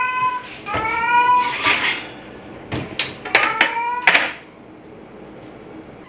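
Domestic cat meowing several times, drawn-out calls that bend up and down in pitch.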